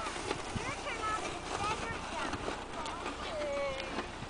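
Distant, unintelligible voices calling out in short rising and falling cries, with one longer falling call near the end.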